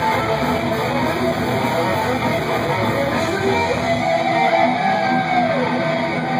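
A heavy metal band playing live, with distorted electric guitars filling the room. About three and a half seconds in, a high note is held and then bends down near the end.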